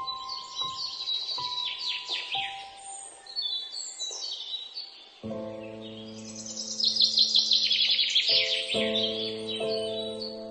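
Birdsong mixed with calm instrumental music: quick high chirps and trills throughout, thickest and loudest in the second half. Under them, a few soft single notes give way to a held chord about five seconds in, then a new chord near the end.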